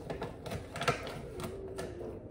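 Plastic bag crinkling and crackling in short, sharp bursts as its top is gripped and folded, loudest about a second in.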